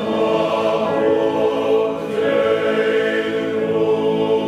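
Male choir singing sustained chords in harmony; the chord changes about halfway through.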